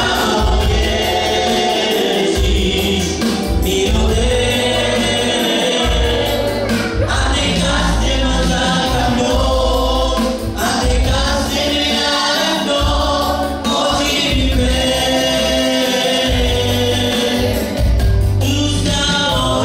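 Live gospel worship song: a woman sings lead into a microphone over a Yamaha electronic keyboard playing chords and bass, with a steady beat.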